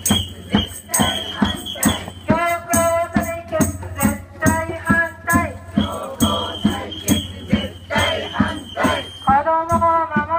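Marchers chanting slogans to a quick, steady beat of hand percussion: shakers and a jingling tambourine. The chanted phrases come in short bursts between the beats, a few seconds apart.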